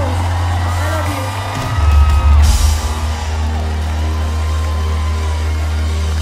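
Live pop concert music with heavily boosted, sustained bass running throughout, a swell in loudness about two seconds in, and gliding vocal lines near the start.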